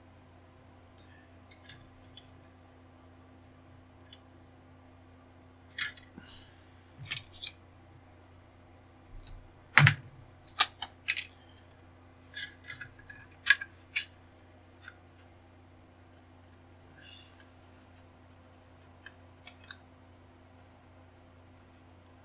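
Scattered clicks and taps of plastic model parts and hobby tools handled on a cutting mat, over a faint steady hum. The loudest is a single sharp click about ten seconds in.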